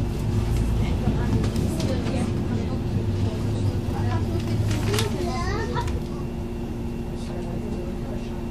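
City bus interior: the engine runs with a steady hum and a deep rumble, which eases about six seconds in. People's voices sound in the background.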